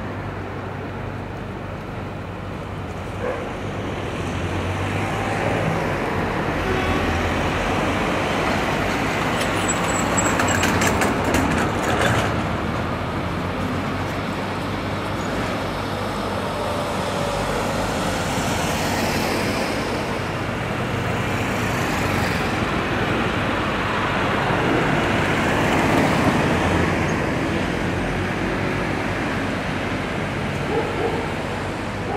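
Steady road traffic noise, swelling and fading as vehicles pass, with a short spell of crackling clicks about ten seconds in.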